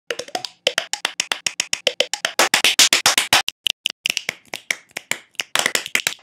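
Fast rhythmic mouth percussion, beatboxed clicks and pops at about seven a second, with a few short voiced sounds mixed in.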